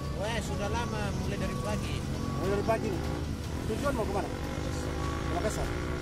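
A man talking over the steady low sound of a truck engine running.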